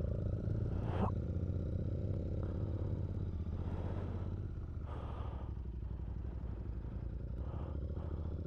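Royal Enfield Interceptor 650's parallel-twin engine running steadily at low revs as the bike rolls off slowly, easing a little after about three seconds.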